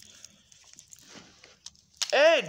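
Faint handling noise from wrestling action figures being moved in the hands: a couple of soft clicks and taps in a quiet room.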